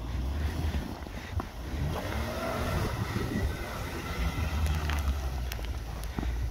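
Volvo XC90 SUV's engine running under load as it drives on snow, its pitch rising and falling in the middle.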